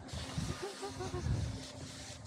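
Low, irregular rumbling and rubbing noise on the action camera's microphone as it is handled, with a faint voice briefly in the background about halfway through.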